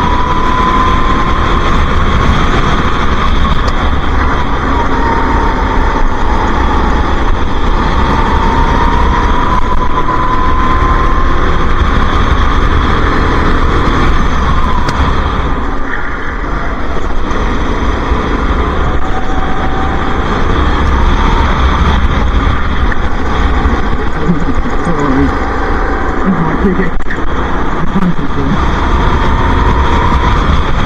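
Go-kart engine running at racing speed, heard onboard over heavy wind rumble. The engine note rises and falls gently with the revs and drops briefly about fifteen seconds in as the kart slows for a corner.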